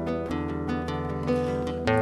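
Acoustic guitar played as an accompaniment, single notes and chords picked out between sung lines, with a firmer strum just before the end.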